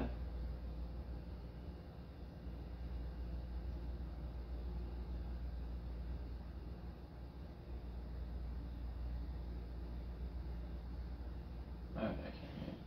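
A tuning fork, struck and held against the bone behind the ear for a Rinne test, ringing as one faint steady tone over a low room hum.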